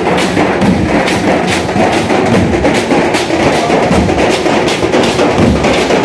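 A street procession drum band of steel-shelled drums and a large bass drum, beaten with sticks in a loud, driving rhythm, about two strong strokes a second with quicker hits between.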